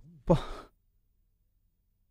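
A man's short breathy sigh, a "pah" lasting about half a second, then the sound cuts to dead silence for over a second.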